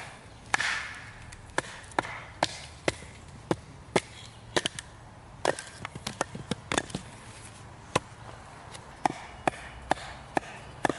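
Ka-Bar Becker BK2, a thick carbon-steel knife, being driven into the end of a short log round by repeated blows of wood on wood: sharp knocks about one every half second, bunching into quick runs near the middle.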